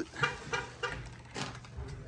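Footsteps, each giving a short squeak, about three a second with a short pause near the middle.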